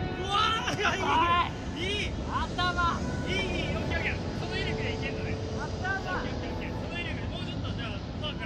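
Men's voices calling out between the players, with no clear words, over background music.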